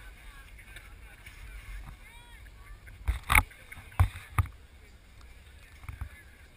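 Four sharp knocks close to the microphone, bunched between about three and four and a half seconds in, over faint distant voices.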